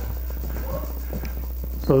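A steady low hum with faint voices from a television news broadcast playing in the room.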